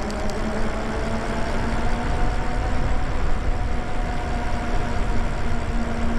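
Riding an electric bike (Lyric Graffiti): a steady rush of wind on the microphone and tyres rolling on wet asphalt, with a faint, even motor whine underneath.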